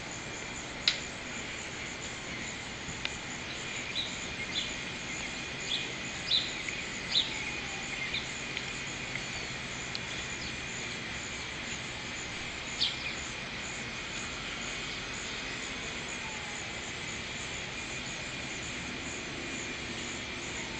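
Steady outdoor drone of insects, with a handful of short, high bird chirps scattered through the first two-thirds.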